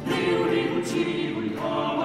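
A four-voice Renaissance vocal ensemble (soprano, countertenor, tenor and bass) singing polyphony in a Spanish villancico. The voices enter together, louder, right at the start.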